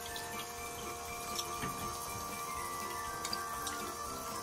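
Water running steadily down the clear plastic spiral chute of a toy nagashi-somen slider, with a few faint clicks.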